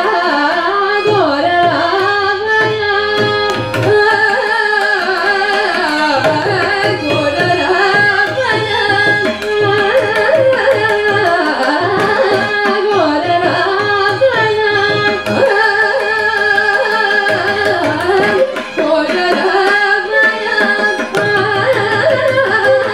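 Carnatic vocal duet by two women singing with heavily ornamented, gliding pitch, with violin accompaniment and a mridangam playing intermittent rhythmic strokes.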